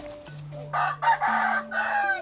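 A rooster crowing once, a long call that starts about two-thirds of a second in and falls away at the end, over low held notes of background music.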